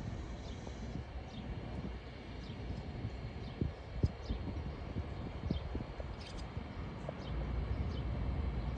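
Quiet lakeside ambience: a low wind rumble on the microphone, short high bird chirps every second or so, and a few scattered soft knocks, the clearest about halfway through.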